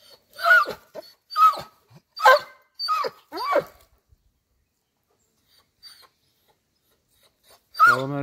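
Large shaggy dog whining: five short, high yelps in quick succession, each sliding down in pitch.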